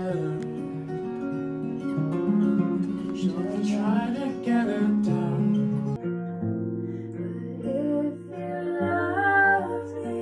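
Acoustic guitar played with a voice singing along. About six seconds in, the sound changes abruptly to another acoustic guitar with singing.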